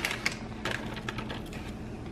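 Dry oatmeal bar mix pouring out of its pouch into a glass bowl: a crackly patter of crumbs with crinkles of the packet, busiest in the first second and then dying away.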